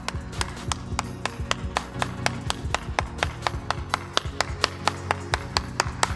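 Hand clapping, sharp and regular at about four claps a second, over background music with a steady low tone.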